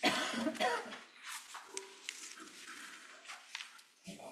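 A single cough right at the start, followed by faint rustling and a few light clicks.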